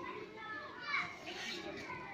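Children's voices in the background, talking and calling out as they play, with a louder high-pitched call about a second in.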